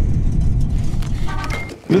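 Loud, rough, low vehicle rumble with a brief pitched tone about a second and a half in.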